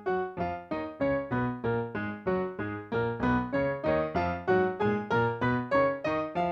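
Piano playing an F-sharp major scale in double octaves, both hands striking octaves together in even, separate notes, about three a second.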